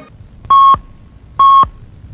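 Radio time-signal pips marking the hour: two short, identical beeps about a second apart, each a steady single-pitched tone lasting about a quarter second.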